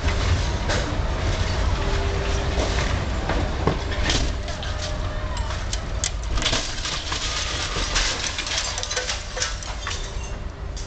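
Demolition excavator working its grab on the building: a steady low engine rumble under frequent sharp cracks and crunches of breaking debris, which come thickest from about four seconds in.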